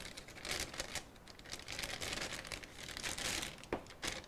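Packaging crinkling and rustling in uneven waves as a new phone case is handled and taken out, with a light click near the end.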